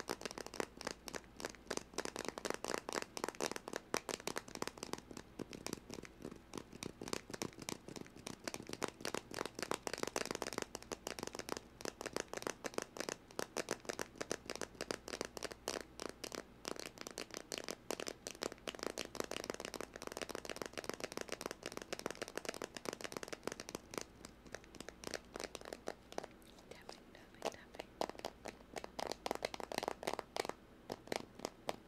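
Close-up ASMR tapping and scratching right at the microphone: a fast, continuous run of sharp ticks, many each second.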